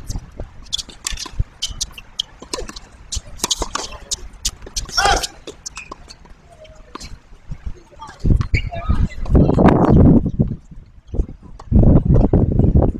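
Tennis ball bouncing on a hard court and struck by racket strings: a series of sharp pops, with a brief distant voice calling about five seconds in. From about eight seconds in a loud low rumble swells up, fades, and comes back near the end.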